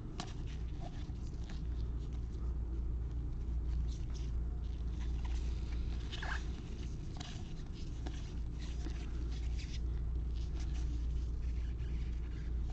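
Trading cards being flipped and slid against one another in gloved hands: a continual run of light, scratchy clicks and rustles, over a steady low hum.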